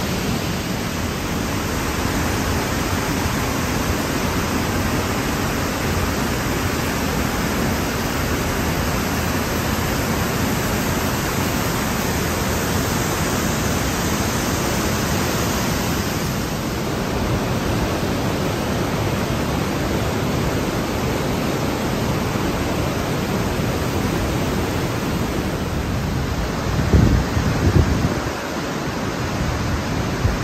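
Waterfall and mountain torrent rushing through a narrow rock gorge: a loud, steady rush of water. A few low thumps come near the end.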